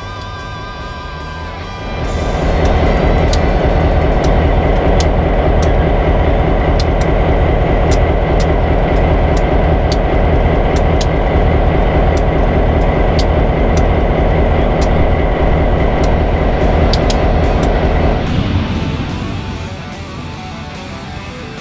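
Kansas City Southern F9 diesel locomotives passing close by, their EMD 567 two-stroke diesel engines running loudly with sharp clicks from the wheels on the rails. The sound comes up about two seconds in and fades away near the end.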